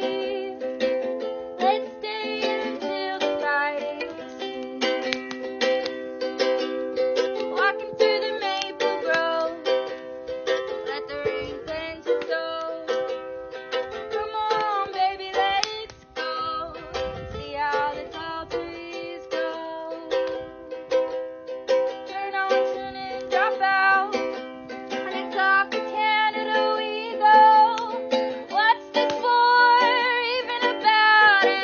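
Ukulele strummed in steady chords, with a woman singing along.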